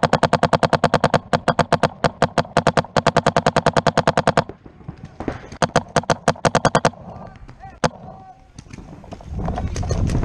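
Paintball marker firing long rapid strings of shots, about a dozen a second, that stop about four and a half seconds in. A shorter string follows, then a single sharp shot near eight seconds, and a rush of movement noise near the end.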